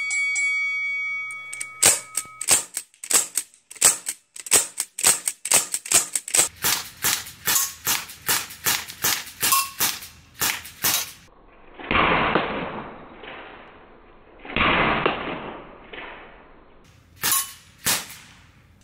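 Sig Sauer semi-automatic .177 pellet air rifle firing rapidly, about three sharp shots a second for roughly nine seconds, then two longer rushing hisses and two more shots near the end, as pellets shred an apple target.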